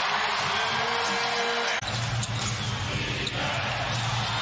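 Arena crowd cheering during a basketball game. About two seconds in it cuts abruptly to steadier crowd noise with a few short knocks of the ball and play on the court.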